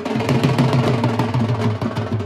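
Drums played in a fast, dense roll of strokes.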